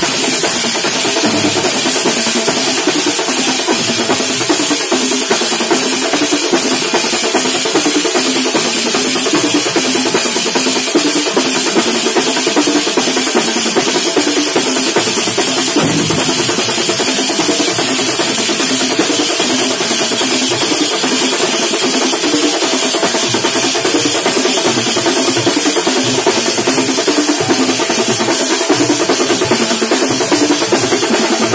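A thambolam drum troupe beating large shoulder-slung drums with curved sticks, many drums together in a loud, fast, steady rhythm.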